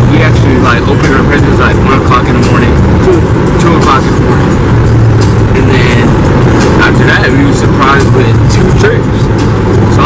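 Loud, steady car-cabin rumble of road and engine noise from a moving car, with a man's voice talking over it.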